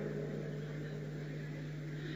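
A pause with no speech, leaving only the recording's steady low electrical hum and faint hiss.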